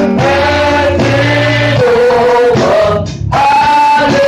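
Gospel singing with a live church band: long held sung notes over a steady bass line, with a brief break about three seconds in.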